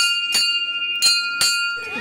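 Hanging temple bell rung by hand, struck four times in two quick pairs, each strike ringing on in a steady, clear tone.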